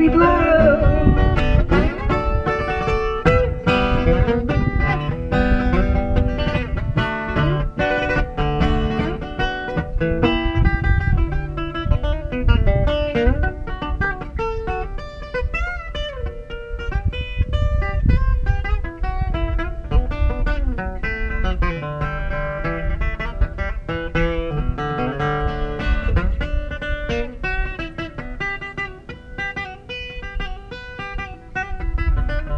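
Amplified acoustic guitar playing an instrumental passage of picked notes and chords over a strong bass, easing off slightly near the end.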